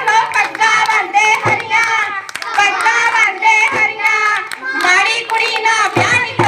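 Group of girls singing a Punjabi giddha folk song together, keeping time with sharp hand claps.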